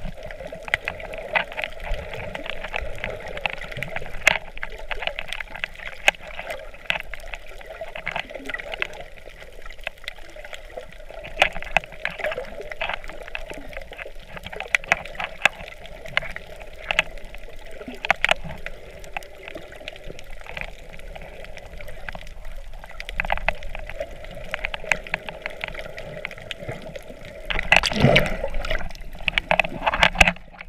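Muffled underwater sound heard through a camera held below the surface on a coral reef: a steady wash of moving water with many sharp, scattered clicks. A louder surge of water comes near the end.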